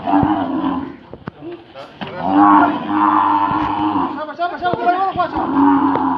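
A roped bull bellowing repeatedly as it is held down: loud, drawn-out calls, the longest starting about two seconds in and lasting nearly two seconds, with another near the end.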